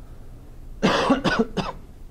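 A man coughing, a quick run of about three coughs starting a little under a second in.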